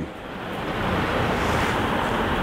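Steady rushing noise that swells over the first second and then holds, heard like wind on the microphone.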